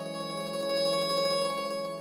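Background music: a chord of steady held notes, swelling slightly and easing off again.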